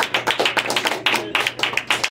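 Applause from a small audience at the end of a song, with one person's claps sharp and loud close by.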